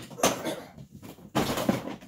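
Handling noise from objects being moved about and set down, in two rough bursts about a second apart.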